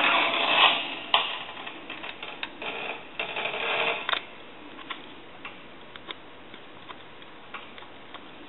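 Handling noise from the telephone's parts and wiring: rustling with a sharp click about a second in, more rustling around the third and fourth seconds, then only faint scattered clicks.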